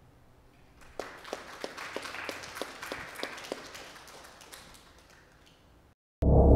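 Audience applauding: clapping starts about a second in, then dies away over the next four seconds.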